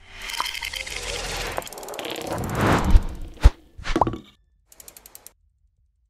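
Sound effects of an animated news-channel logo sting: a rushing swell of noise that builds to two heavy thumps about three seconds in, then a short run of rapid clicks near the end.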